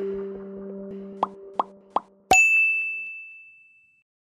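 Logo-intro sound effects: held musical tones fading out, three quick plops in a row, then a sharp hit with a bright ringing ding that dies away.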